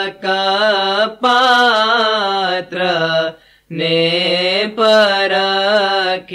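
An Ismaili ginan, a devotional hymn, sung by a single voice in long held, ornamented notes, with a short pause for breath about halfway.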